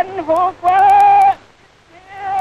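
A man's voice speaking Mandarin in a formal proclamation on an old archival recording: high-pitched, with a few short syllables and then one long drawn-out syllable held for most of a second.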